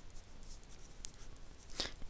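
A pen writing on paper: faint scratchy strokes as a word is written out, with a small click about halfway through.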